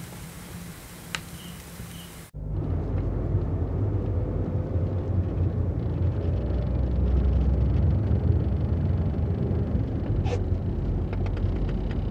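Car interior noise heard from inside the cabin: a steady low rumble of engine and road. It starts abruptly about two seconds in, after a few seconds of quiet room tone with faint clicks.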